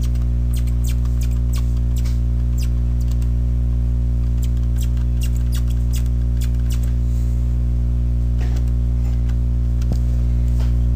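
Steady electrical mains hum picked up on the recording, with scattered light clicks and taps from a graphics-tablet pen placing curve nodes.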